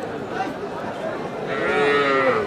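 A calf bawls once, a long pitched call starting about a second and a half in, over the chatter of a crowd.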